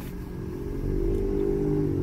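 A car engine running with a steady hum that grows gradually louder.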